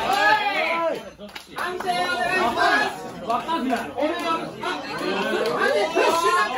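Several people's voices talking and calling out at once, overlapping, with a short lull about a second in.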